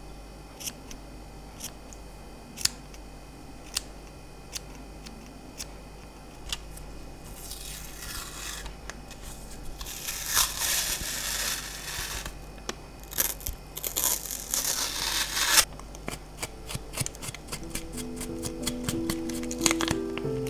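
Small scissors snipping yarn fibres, sharp single snips about once a second. Then adhesive tape is pulled off its roll in three long rasping tears, and music begins near the end.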